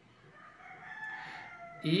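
A faint, drawn-out bird call lasting about a second and a half, swelling and then fading, in the background.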